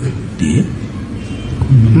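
A steady, noisy low rumble, with a man's low voice coming in near the end.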